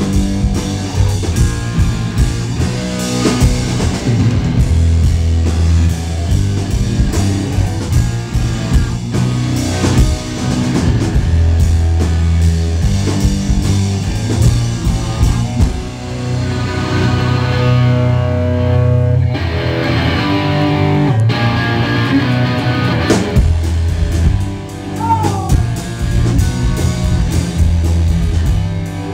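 A rock band playing live, with electric guitars over a drum kit.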